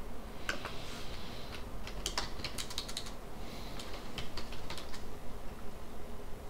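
Typing on a computer keyboard: several short runs of keystrokes with pauses between, busiest around two to three seconds in.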